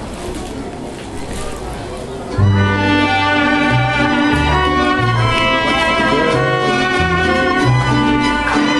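Audience murmur, then about two and a half seconds in a children's mariachi ensemble starts a piece suddenly and loudly. Sustained violin notes play over a stepping low bass line.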